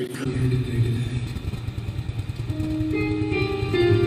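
Live guitar strumming a song's opening with a quick, even rhythm, starting right away, with held higher notes joining about two and a half seconds in as the music builds.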